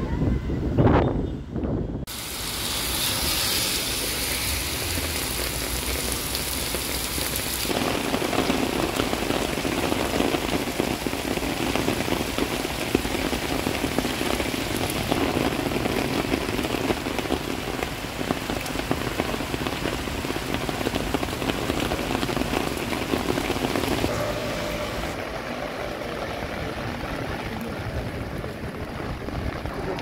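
Wind buffeting the microphone for the first two seconds, then a steady rush of heavy rain pouring onto a paved road and surroundings.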